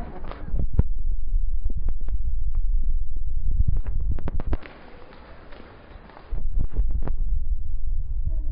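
Handling noise on a handheld phone microphone carried at walking pace: heavy low rumbling with scattered sharp knocks. The rumble drops away for about a second and a half just past the middle, leaving a fainter hiss, then returns.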